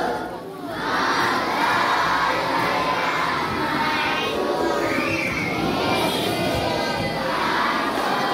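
A large group of children's voices shouting together, many voices at once, with a brief lull about half a second in.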